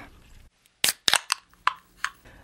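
Several short, sharp clicks in quick succession, starting a little under a second in.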